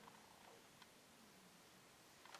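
Near silence: room tone with a few faint, light ticks.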